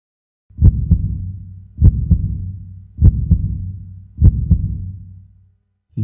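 Heartbeat sound effect: four slow 'lub-dub' double beats, about fifty a minute, over a low hum that fades away near the end.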